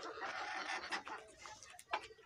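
Flock of Fayoumi chickens clucking faintly, the calls scattered and soft.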